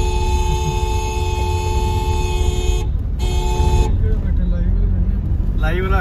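A two-note vehicle horn held for nearly three seconds, then sounded again in a short toot, over the low rumble of a vehicle driving.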